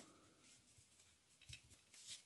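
Near silence, with a faint tick at the start and another brief, faint sound about one and a half seconds in from playing cards being handled in the fingers.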